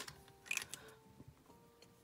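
Quiet handling of a plastic liquid glue bottle: a few light clicks in the first second, over faint soft background music.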